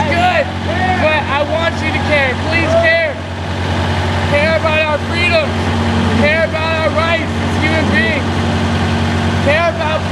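A steady low hum of an idling motor runs throughout, under short, high-pitched calls and laughter from several voices.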